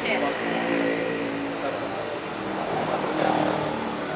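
People talking in conversation, with a steady background noise under the voices.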